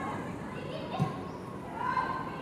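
Female players' shouts and calls on a football pitch over open-air background noise, with one sharp thud about halfway through.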